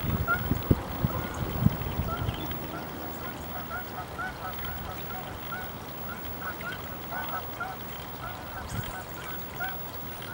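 A flock of geese honking steadily, several short calls a second overlapping one another. Low rumbling with a couple of thumps in the first two seconds.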